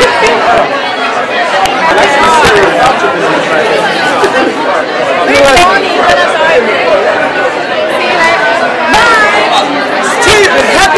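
Several people talking at once close to the microphone: loud, overlapping chatter in a crowded room.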